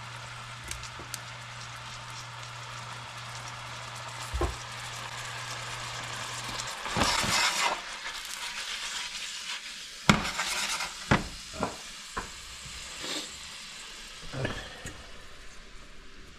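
Peas, onion and capocollo sizzling in a stainless steel skillet over a low steady hum. About seven seconds in, the hum stops as the pan is lifted and tossed, the food flipping with a louder rush of sizzle. About ten seconds in, the pan comes back down on the stovetop with a sharp clank, followed by a few lighter knocks.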